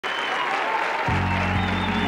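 Studio audience applauding, with the band's music starting about a second in on low held notes.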